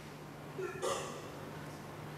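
A person's short breathy vocal sound, with a brief rise in pitch, a little under a second in, over a steady low hum.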